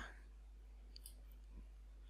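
Near silence with a faint computer mouse click about a second in.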